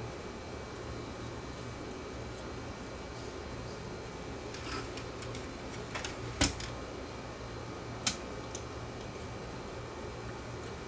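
Handling of a cassette deck's tape transport mechanism: a few light clicks and taps of its plastic and metal parts, the loudest about six and a half seconds in and another sharp one about eight seconds in, over a steady low hum.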